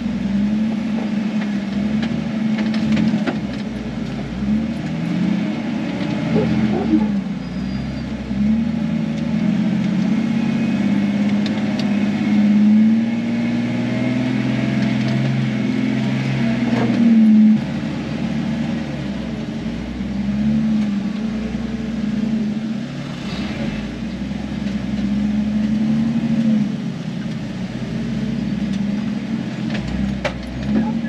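Jeep Wrangler engine heard from inside the cab, crawling up slickrock at low speed. Its pitch rises and falls as the throttle is worked, with a short louder rev a little past halfway.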